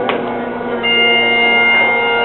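Highland bagpipes striking up for the dance: the steady drones sound first, then the chanter comes in about a second in on a long held note, louder.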